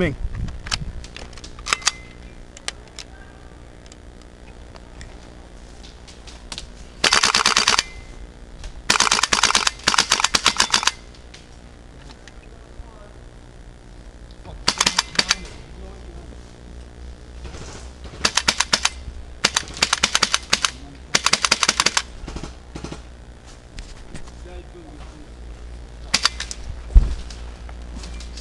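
Airsoft rifles firing rapid full-auto bursts, each a second or so long: one about seven seconds in, two more around nine to eleven seconds, then a cluster between fifteen and twenty-two seconds. Scattered single clicks fall between the bursts, and there is one sharp knock near the end.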